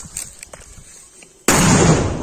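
A Diwali firecracker ('bomb' cracker) going off with a single sudden, very loud blast about one and a half seconds in, after a few faint crackles from the burning fuse.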